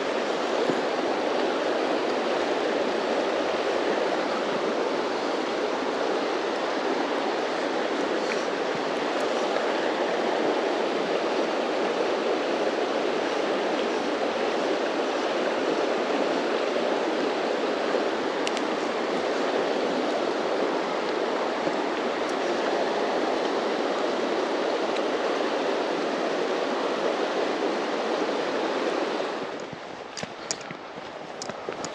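Steady rush of fast, broken river water flowing over stones close by, which drops away abruptly just before the end.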